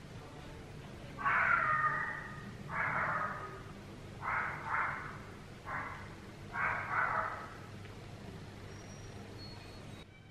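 A bird calling loudly five times in a row, each call lasting about half a second to a second, spaced over about six seconds.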